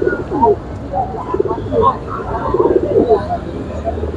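Caged domestic pigeons cooing: several low, throaty coos, with people talking in the background.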